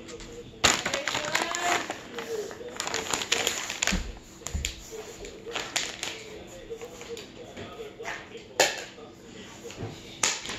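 A rapid, irregular scatter of clicks and taps as small hard dog treats drop and bounce on a hard floor, with a sharper knock near the end.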